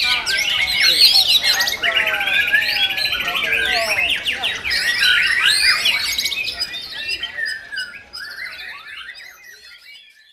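Competition white-rumped shama (murai batu) singing a dense, varied song of sweeping whistles and fast rattling trills. The song fades out over the last few seconds.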